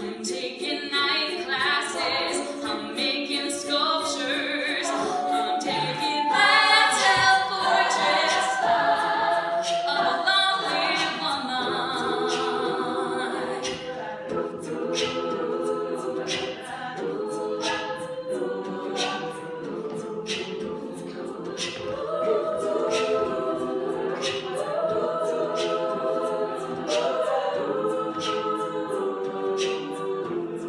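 Women's a cappella group singing: a lead voice on microphone over sung backing harmonies, with a steady percussive beat and no instruments.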